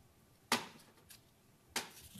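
Two sharp plastic clicks, about a second and a quarter apart, as a small plastic draw ball is handled and twisted open.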